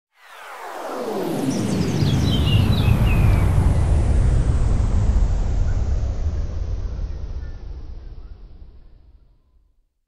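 Intro sound effect for an animated logo: a deep rumbling swell that builds over the first two seconds, with a few falling whistle-like sweeps high above it, then slowly dies away.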